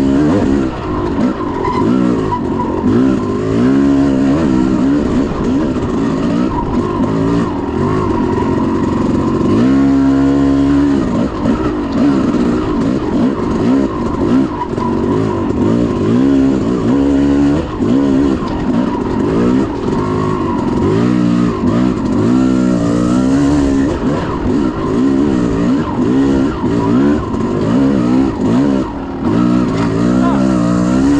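Dirt bike engine being ridden off-road, revving up and down continuously, its pitch rising and falling every second or two with throttle and gear changes.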